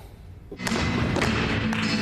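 Heeled flamenco shoes striking a studio floor in footwork over flamenco music, coming in about half a second in after a brief lull; the strikes are sharp and come roughly every half second.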